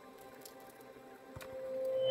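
Soft, faint squishing of a silicone pastry brush dabbing oil onto a baked flatbread, with a few light clicks, under quiet background music that swells near the end.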